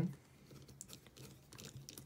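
Faint, scattered small clicks and rustles of a folding knife being handled as its handle assembly is set in place for tightening.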